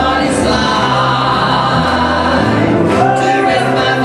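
Gospel trio singing in close harmony with piano accompaniment, holding long sustained notes.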